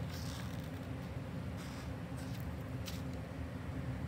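A steady low room hum, with faint strokes of a Sharpie felt-tip marker writing on paper in the first moments.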